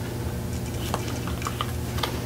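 Faint clicks and slides of thin card-stock tarot cards as one card is pulled from the front of the deck to the back, over a steady rushing hum from a central air conditioner.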